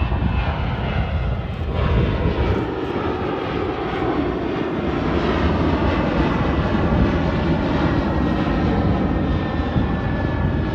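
Twin-engine jet airliner climbing out after takeoff, its engines giving a steady roar with a faint whine over it as it draws away.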